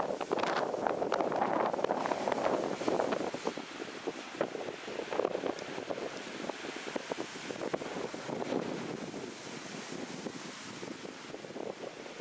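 Wind buffeting the microphone: a rough, uneven rushing noise with no engine or pitched tone, stronger over the first few seconds and then easing off a little.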